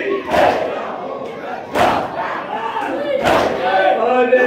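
Crowd of men doing matam, striking their chests in unison about every second and a half, with the crowd's voices chanting and calling out along with a noha.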